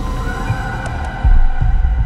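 Eerie horror-style soundtrack: a sustained drone over deep, throbbing, heartbeat-like bass pulses, growing louder a little past halfway.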